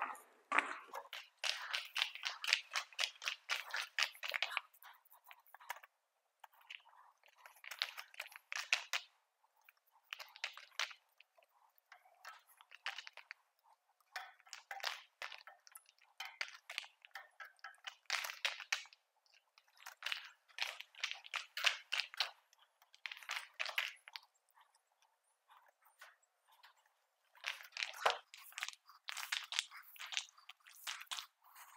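Paint roller working wet epoxy coating on a concrete floor: a sticky crackling in bursts of one to three seconds with short pauses between. There is a single knock near the end.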